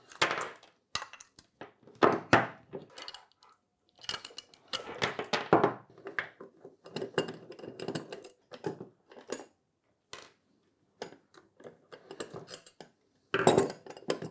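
Screwdriver and small screws clicking and scraping as the metal back plate of a guitar pedal enclosure is unscrewed, with the plate and pedal clinking and knocking on a wooden desk in irregular bursts.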